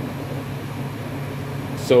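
Steady low mechanical hum of a fan or ventilation unit, with no other distinct sound; a man's voice starts just at the end.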